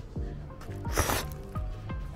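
One short slurp of hot eel liver soup sipped from a cup, about a second in, over quiet background music.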